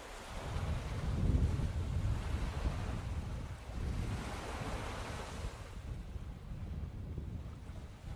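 A rushing noise like surf, with a low rumble beneath, swelling and easing a couple of times; the higher part of the hiss thins out in the second half.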